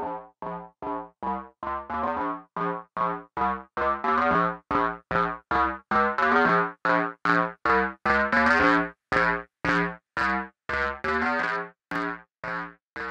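Korg Minilogue synthesizer playing short, detached notes about three a second through the Line 6 HX Stomp's low-pass filter. The cutoff sweeps open, so the notes turn brighter and buzzier toward the middle, then closes so they turn dull again near the end.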